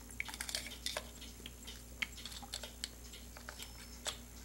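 Light clicks and small metallic taps of pen-kit parts handled by hand: a ballpoint refill with its spring being fitted into a metal pen barrel. A quick run of clicks in the first second, then scattered single clicks.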